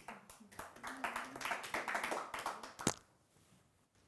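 Audience clapping, a dense patter of many hands that cuts off sharply just before three seconds in.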